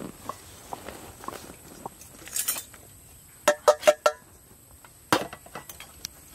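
Tins of fish being opened and handled on steel. A short scraping tear of a ring-pull lid peeling back comes about two seconds in, then four quick, ringing metal clinks of tins against the steel tray or bowl, and a single knock near the end.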